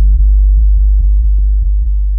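Deep electronic bass drone: a loud, steady, very low tone with faint clicks scattered through it, easing slightly in level.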